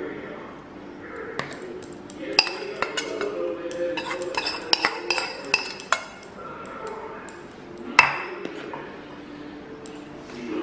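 Metal spoon and steel cookware clinking while hot syrup is poured and spooned over a cake in a steel tin: a run of sharp clinks through the middle and one louder clink near the end.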